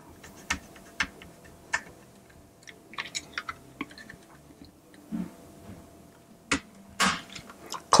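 Light clicks and taps of a plastic USB hub and 3M Dual Lock fastener strips being handled and set on a robot-car platform, then a couple of sharper snaps near the end as the hub is pressed down and the Dual Lock engages.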